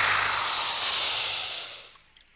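A cartoon porcupine bristling its quills as a threat: a loud, airy hiss that is strongest at the start and fades out over about two seconds.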